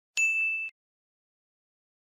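A single bright electronic ding, a notification-bell sound effect, lasting about half a second and cut off sharply.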